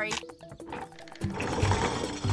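Cartoon background music, with a low rumbling sound effect starting a little over a second in, fitting a wooden rope-and-wheel lift lowering onto its platform.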